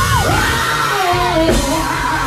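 Male gospel singer belting through a handheld microphone with instrumental accompaniment underneath, his voice sliding and bending in pitch on held vowels. There is a sharp hit about one and a half seconds in.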